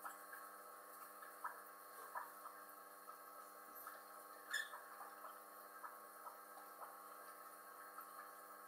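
Faint steady electrical hum with many overtones, with scattered faint ticks, one a little louder about halfway through.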